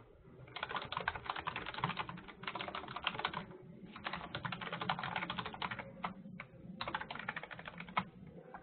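Typing on a computer keyboard in three quick runs of key clicks, with short pauses between them.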